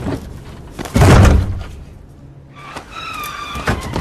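A heavy slam about a second in, a film sound effect of a body being smashed against a glass booth, followed near the end by a short high-pitched tone.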